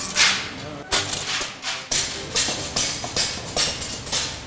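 Sheet glass being broken by hand at a cutting table, with the pieces falling into a scrap bin: a quick series of sharp cracks and shattering crashes.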